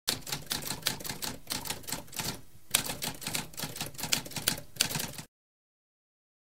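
Typewriter typing: a rapid run of key strikes with a brief pause midway, stopping about five seconds in.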